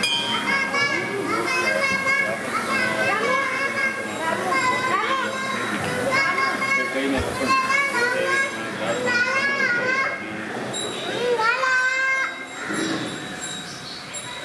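Many children's voices calling and chattering over one another, high-pitched and wavering.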